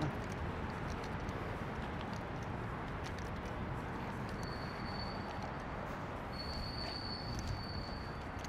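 Steady outdoor city background noise, an even low rush, with faint footstep-like clicks. A thin, steady high whine comes in about halfway through, breaks off briefly, and returns.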